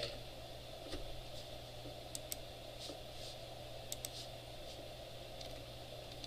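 Faint, scattered computer keyboard keystrokes and clicks, about a dozen irregular ticks, over a steady low hum of room noise.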